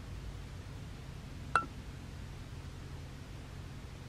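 Quiet steady background hum with a single short click that rings briefly, about one and a half seconds in.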